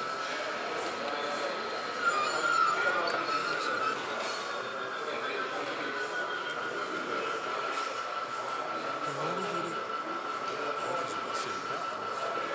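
Indistinct chatter of many people in a large hall, with a thin steady high tone throughout; the chatter is a little louder about two seconds in.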